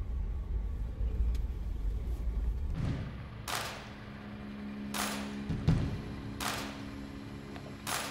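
Low rumble of a Jeep Wrangler JL driving on a dirt trail, heard inside the cabin. About three seconds in it gives way to music: a held low tone with four heavy hits, roughly every second and a half.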